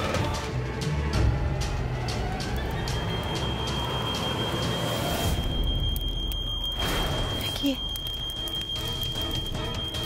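Dramatic background score, joined about three seconds in by a single steady high-pitched electronic alarm tone that holds without a break: a fire alarm going off. A low boom sounds in the music about halfway through.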